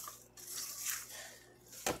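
Spatula stirring seasoned raw chicken pieces in a stainless steel bowl: soft wet squishing and scraping strokes, with one sharp click just before the end.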